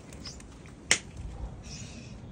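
A single sharp click from a metal door about a second in, with a few fainter ticks and handling noise around it.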